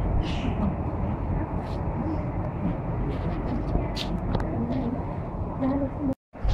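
Indistinct background chatter of voices over a steady, rumbling ambient noise, with no clear words.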